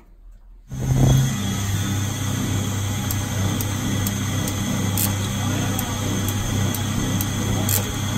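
A jewellery bangle cutting machine starts up a little under a second in and runs steadily with a low hum, its spinning cutter working a gold bangle. A light, sharp tick comes about twice a second.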